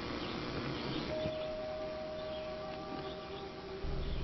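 A single steady musical note starts about a second in and is held for about two seconds as it fades. A louder low steady hum begins just before the end.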